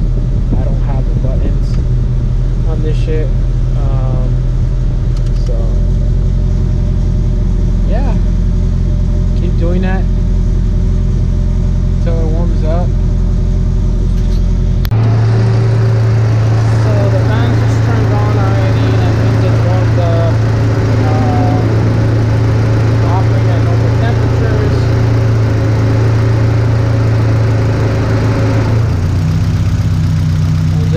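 Toyota Celica's four-cylinder engine running steadily while warming up to open the thermostat for a coolant bleed, heard from inside the cabin at first and then louder at the open engine bay. The sound changes near the end.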